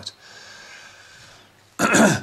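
A soft breath hissing out and fading, then a man clearing his throat loudly near the end.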